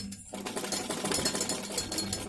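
Domestic sewing machine stitching: a fast, even clatter of the needle mechanism that starts about a third of a second in, after a short click.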